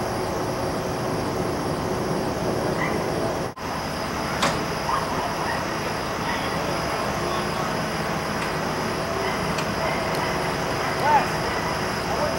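Steady outdoor street noise of road traffic, with faint distant voices now and then.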